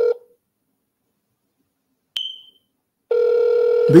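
Ringback tone of an outgoing phone call: one steady electronic tone that stops just after the start and comes back about three seconds later. A short, sharp click with a brief high ping falls in the gap about two seconds in.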